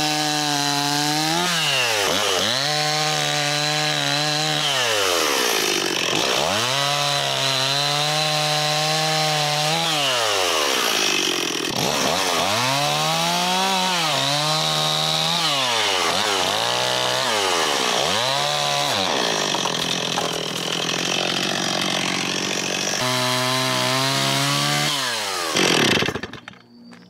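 Stihl two-stroke chainsaw cutting through fallen logs. The engine is held at high revs, then falls away and climbs back several times as the cuts go on.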